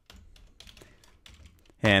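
Typing on a computer keyboard: a string of faint, light key clicks, irregularly spaced.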